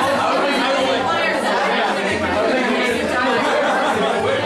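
Many people talking at once in a crowded room: a steady hubbub of overlapping conversations with no single voice standing out.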